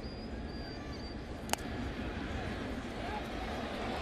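Ballpark crowd murmur, with one sharp crack of the bat meeting the ball about a second and a half in: a check-swing tap that sends a weak grounder toward third.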